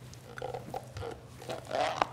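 Small eating noises at a table: a few short clicks and chewing sounds, then a short breathy noise near the end, over a steady low hum.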